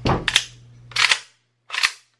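Sharp metallic clacks from an Arsenal SLR-104 FR AK-pattern rifle's action as it is cleared by hand: the charging handle and bolt carrier are worked back and let forward. Four separate clacks, two close together at the start, one about a second in and one near the end.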